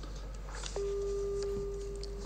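A steady, single-pitched tone starts suddenly a little under a second in and holds at an even level over low room tone.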